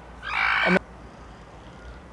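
A chicken gives one short, raspy squawk, about half a second long, as it is handled.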